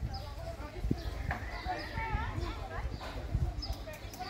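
Indistinct children's and people's voices in the background, with hollow knocks and thumps of footsteps on the wooden boards of a children's play tower, one sharper knock about a second in.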